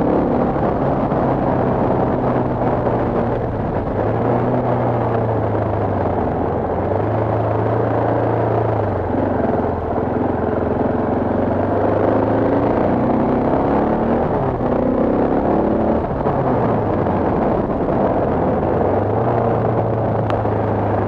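Motorcycle engine running while riding a gravel road, its pitch rising and falling again and again with throttle and gear changes, under a steady rush of wind and road noise on the microphone.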